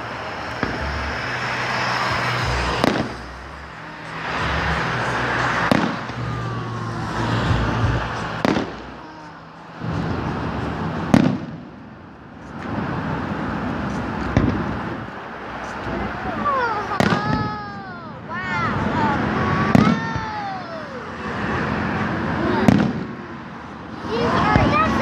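Aerial fireworks shells bursting, a sharp bang every two to three seconds, about eight in all.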